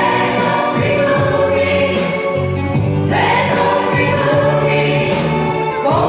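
Live pop music: several voices singing together over instrumental accompaniment, with a new sung phrase starting about halfway through.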